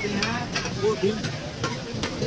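Mutton keema sizzling in oil on a large flat griddle while a metal spatula stirs and scrapes it, with a few sharp clicks of metal on the pan.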